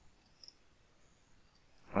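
Near silence: room tone, with one faint short click about half a second in.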